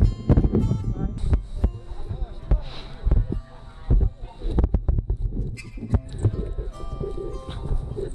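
Wind buffeting a body-mounted action camera's microphone, with irregular thuds and knocks from footsteps and harness as a paraglider pilot pulls up the wing and runs to launch.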